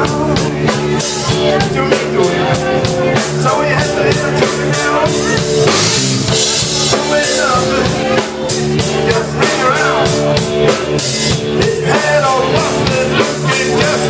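Live rock band playing: electric guitar, keyboard and drum kit with a steady beat.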